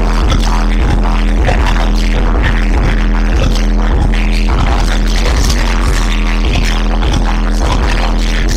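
Hip-hop beat played loud through a club PA, with a deep, sustained bass under a regular drum beat.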